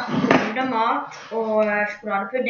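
Speech only: a boy talking.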